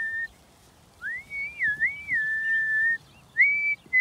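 A person whistling a tune: a note trailing off at the start, then after a short pause a rising phrase with wavering notes that settles into a long held note, and a short note near the end.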